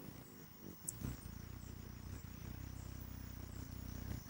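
Low, steady hum of a hummingbird's wings as it hovers at flowers, strongest from about a second in, with a single short high tick near the start.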